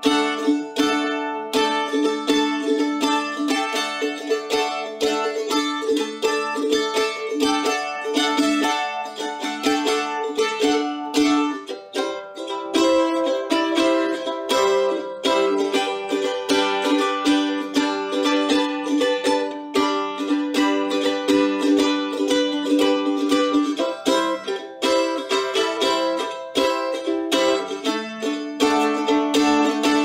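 Suzuki A-style mandolin, its eight strings played with a pick in a continuous stream of rapid notes and chords, with a brief dip about twelve seconds in.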